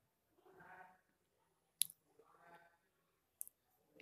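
Near silence broken by two faint sharp clicks about a second and a half apart, with two faint short cries in the background.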